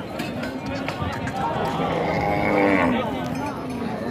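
A dairy cow mooing: one long call, loudest in the middle.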